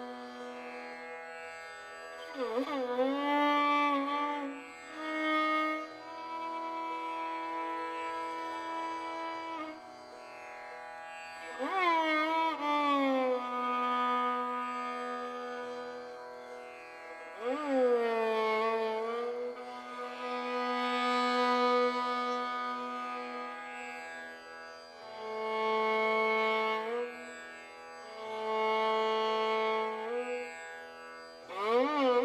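Indian classical violin playing a slow melodic passage: long held notes joined by wide sliding glides between pitches, with three sweeping slides at about the 3-, 12- and 18-second marks. No drum strokes stand out.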